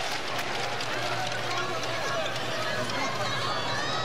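Basketball arena crowd noise: many voices talking and calling out at once, steady in level, with no single sound standing out.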